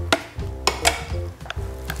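Background music, with several sharp knocks and clicks of a spoon tapping and scraping thick hummus out of a plastic blender jar.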